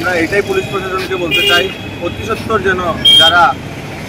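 A man speaking Bengali to the camera, with street traffic noise behind his voice.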